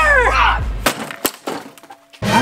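A drawn-out yell, then two sharp cracking smashes about a third of a second apart with fainter cracks after, as a flat black board is slammed down onto a body lying on a table.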